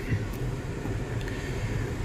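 Steady low hum of a 2017 Mazda 6's engine heard from inside the cabin, with no sudden events.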